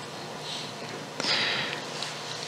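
A man breathing in close to the microphone during a pause in his talk: a soft breath about half a second in, then a longer, louder intake past the middle.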